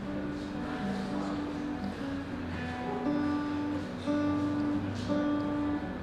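Acoustic guitar playing the instrumental introduction to a slow folk song, held notes ringing and changing about every half second to a second.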